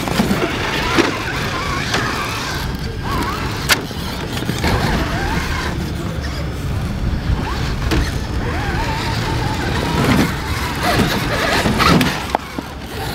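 Electric motor of a 1/6-scale RC rock crawler whining in short rising and falling spurts as it is driven over rocks, with a few sharp knocks and a constant low rumble.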